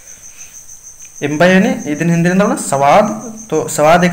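A steady, high-pitched pulsing trill of insects such as crickets runs throughout, with a man speaking from about a second in until shortly before the end.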